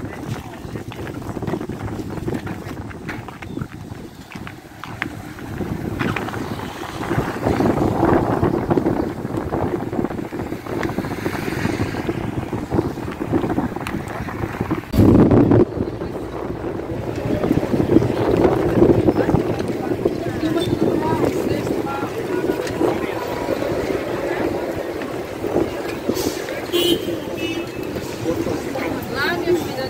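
Wind buffeting the microphone outdoors, with one strong gust about halfway through, over indistinct background voices.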